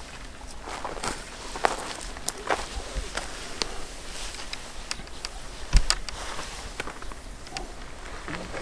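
Footsteps crunching through dry grass and brush, a run of irregular crackles and rustles, with one heavier thump about six seconds in.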